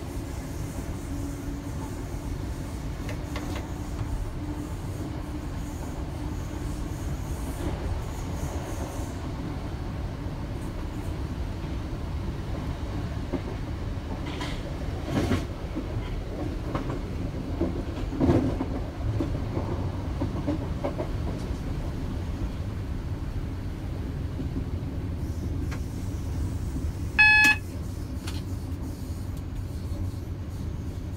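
A Class 319 electric multiple unit running towards Brighton, heard from the cab: a steady rumble of wheels on rail. In the middle there are a few sharp knocks as it runs over pointwork. Near the end a short, pitched beep sounds once, the loudest thing heard.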